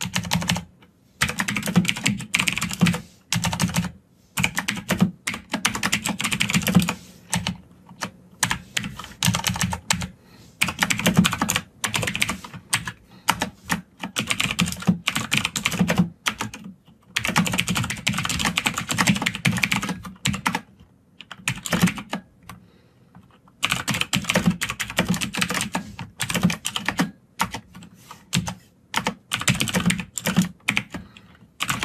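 Computer keyboard typing in quick bursts of keystrokes, broken by short pauses, one longer pause about two-thirds of the way through.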